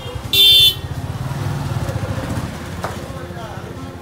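A short, loud, high-pitched vehicle horn toot about half a second in, over the steady low rumble of a small engine on the move.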